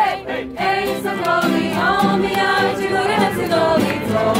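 A woman leading a Polish song with other voices joining in, the singing carried mostly by the voices, with a brief dip just after the start.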